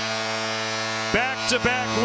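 A steady low electrical hum with a stack of even overtones, unchanging in pitch, over a faint even background wash. A voice comes in a little after one second.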